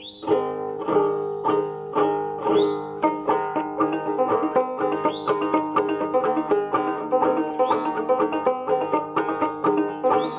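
Handmade fretless five-string banjo played solo: an old-time tune of plucked, ringing notes over a steady drone. The picking gets busier about three seconds in.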